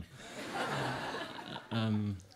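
Audience laughter, a room full of people chuckling, that fades away after about a second and a half; a man's voice starts near the end.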